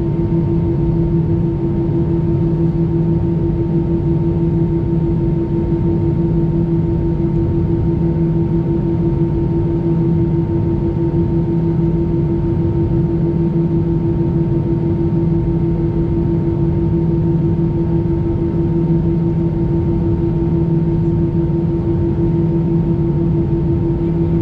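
Airbus A320 cabin on the ground at idle: a steady, even hum with two low droning tones and a fainter higher one, unchanging throughout.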